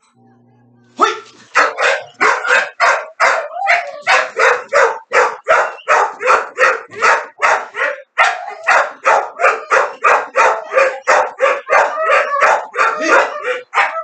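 Pit bull barking loudly and without a break, about three barks a second, starting about a second in.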